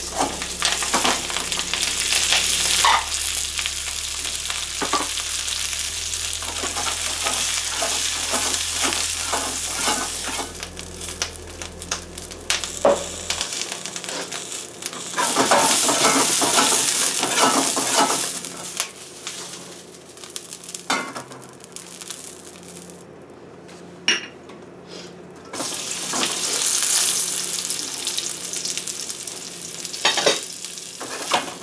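Snow peas sizzling in hot oil in a wok, starting with a burst as they hit the pan, with the clicks and scrapes of a spatula stirring them against the wok. The sizzle swells and fades as they are tossed, easing off for a while in the second half before rising again.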